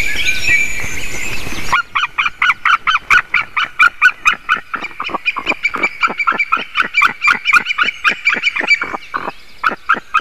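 White-tailed eagles calling: after a stretch of steady background noise, a fast run of sharp, yelping calls starts about two seconds in, about four a second, easing briefly near the end. It is the pair calling together as the male comes in to the nest.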